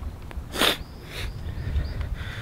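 A short, sharp breath close to the microphone about two-thirds of a second in, then a fainter one about half a second later, over a low steady rumble.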